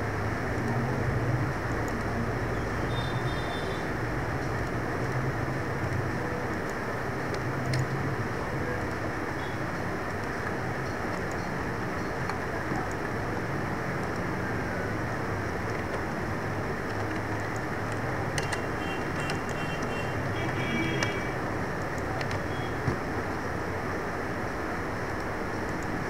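Steady background noise with a low hum throughout, and a few faint clicks near the end.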